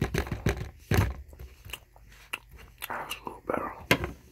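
Close-miked chewing with wet lip smacks and mouth clicks, irregular, the sharpest smack about a second in and another just before the end.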